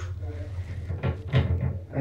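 Wooden wardrobe door rattling and knocking in its frame a few times about a second in, as if moving on its own.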